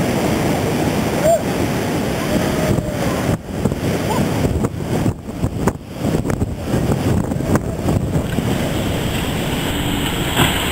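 Heavy surf breaking on a river-mouth bar, a dense, continuous rush of waves, with wind buffeting the microphone.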